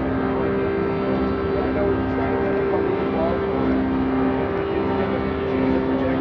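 Steady outdoor street noise: a constant low hum that comes and goes, mixed with indistinct chatter of voices.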